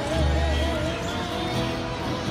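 Live Hawaiian band music: a voice holds a note with a slow vibrato over plucked upright bass and strummed ukulele and guitar.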